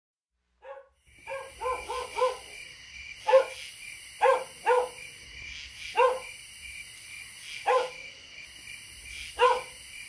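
A dog barking about ten times: a quick run of four barks near the start, then single barks spaced a second or more apart, over a steady faint high hiss.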